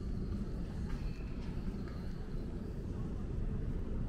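Steady low rumble of city street ambience, with a few faint sounds about a second in.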